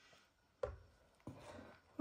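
A spatula scraping and stirring thick carrot kheer in a pan, in two soft strokes, one just after half a second and one just after a second.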